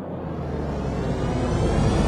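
A rushing, engine-like noise that swells steadily louder while slowly rising in pitch.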